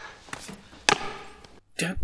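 Two short, sharp knocks over a faint background hiss, the second and louder one just before a second in.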